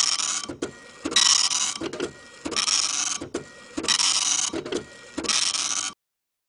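Printer sound effect: the print head makes five buzzing passes about every 1.3 s, with short clicks between them, and stops abruptly near the end.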